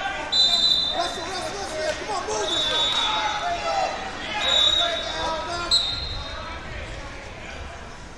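Wrestling referees' whistles: four short, steady blasts a second or two apart. Indistinct shouting from coaches and spectators runs underneath.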